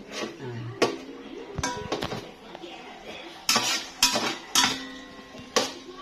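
Metal spoon knocking and scraping against the inside of a cooking pot while stirring. A string of sharp clinks with brief ringing, a few spaced out early and the loudest run of them about three and a half to five and a half seconds in.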